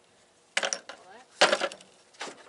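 Two clanks as the halves of a two-piece steel pulley are set down on a lawn tractor's sheet-metal deck, about half a second and a second and a half in; the second is the louder.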